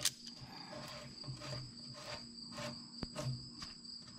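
Faint soft clicks and taps of a socket being turned by hand on a bolt in the tractor's sheet-metal floor panel, with one sharper click about three seconds in, over a steady high-pitched insect trill.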